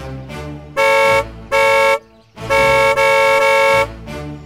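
Vehicle horn honking at a car blocking the road: two short honks, then one long blast.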